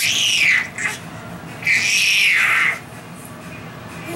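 A baby squealing twice in high-pitched glides: a short rising-then-falling squeal at the start, then a longer arched squeal about a second and a half in.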